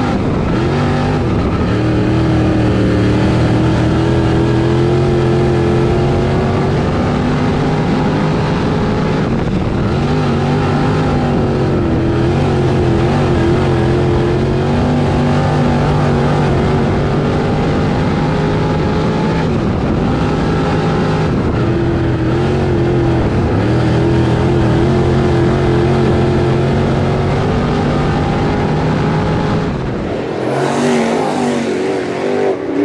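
Dirt late model's crate V8 engine at race pace, heard from inside the cockpit. The engine pitch climbs along the straights and drops back twice as the car lifts for the turns.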